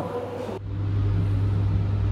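Steady low hum of a passenger lift running, starting suddenly about half a second in.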